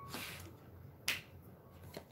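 Tarot cards being handled, with one short, sharp snap about a second in and a faint rustle just before it, over quiet room tone.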